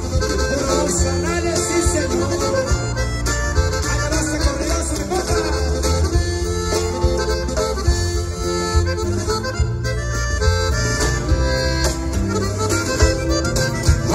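Norteño band playing an instrumental passage of a corrido through a large arena PA: accordion carrying the melody over guitar, bass and drums, with a steady beat.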